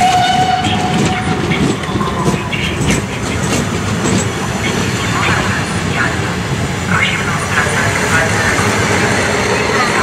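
Old passenger coaches rolling slowly past, their wheels rumbling and clattering over the rail joints, with people's voices mixed in. A short whistle sounds at the very start.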